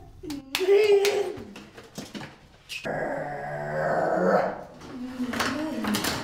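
Wordless vocal sounds traded back and forth in an intensive-interaction exchange: a short higher call about half a second in, then a longer, lower, rough vocal sound from about three seconds in, and more near the end.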